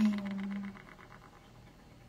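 A woman's voice holding out the last syllable of a phrase for under a second, with a fast, even ticking fading out behind it, then quiet room tone.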